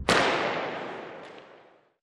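A graphics-transition sound effect: a sudden sharp crack with a hissing tail that fades away steadily over nearly two seconds.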